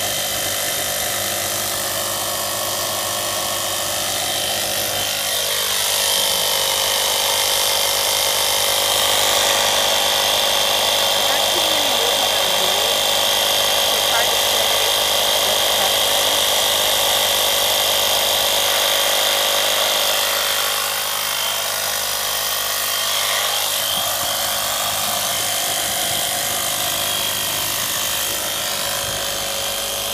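A 12-volt handheld car vacuum and air compressor combo running in compressor mode, its small electric motor humming steadily with a high whine as it pumps air through a hose into an exercise ball. It runs a little louder for about fifteen seconds in the middle.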